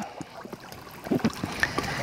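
Quiet water lapping with a low outdoor hiss, and a few faint clicks from about a second in as a baitcasting reel is wound slowly.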